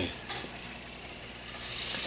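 Faint, steady whir of a Holmes oscillating stand fan's motor and blades after its test on the new mechanical three-speed switch, with a light click about a third of a second in.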